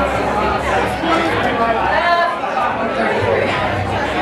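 Voices and crowd chatter in a club between songs, with no music playing; a low amplified drone dies out about half a second in.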